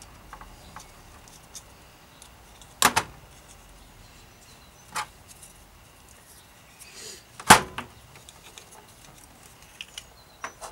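Sharp clicks and knocks of small plastic Shimano Altus trigger-shifter parts and a screwdriver being handled and set down on a metal workbench during reassembly. There are a few separate knocks: a double one about three seconds in, another at five seconds, and the loudest about seven and a half seconds in.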